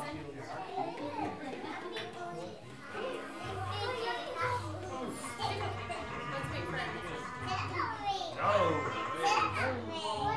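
Young children's voices and chatter, with music starting about three and a half seconds in that has a steady low beat of roughly one pulse a second.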